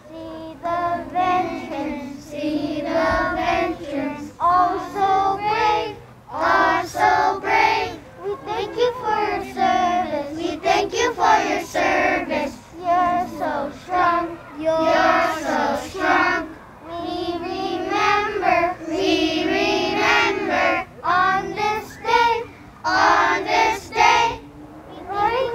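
A group of young children singing a song together, phrase after phrase with short breaks between lines.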